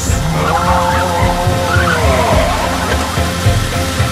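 Volkswagen T3 Westfalia camper van driving slowly past close by, under rock music with a steady beat. A long held tone slides down about two seconds in.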